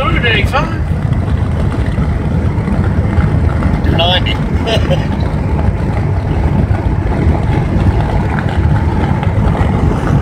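Steady low road and engine rumble inside a car cabin moving at highway speed. Short voice-like sounds come through near the start and again about four seconds in.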